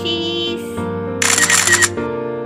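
Background music with a camera-shutter sound effect, a short crackly "cekrikk" click a little past the middle that is the loudest thing heard.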